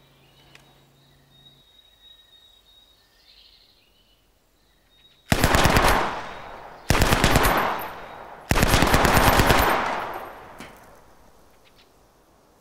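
Egyptian Port Said submachine gun, a licence-built copy of the Carl Gustaf M/45 'Swedish K', firing 9mm in three short fully automatic bursts at about 600 rounds a minute. The bursts start about five seconds in, the third is the longest, and each trails off in an echo.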